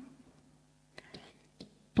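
A pause in a woman's speech, with a few faint short ticks of a stylus against an interactive whiteboard as she begins to write, then speech resuming at the end.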